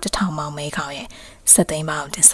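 Speech only: a narrator's voice speaking in Burmese, with a short pause about a second and a half in.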